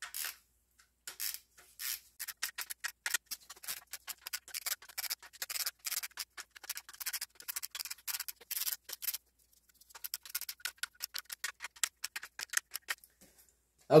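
A hand ratchet clicking in long runs of quick clicks as it slowly and evenly tightens the camshaft bearing-cap nuts on a BMW M52TU/M54 cylinder head. There is a short break about nine seconds in.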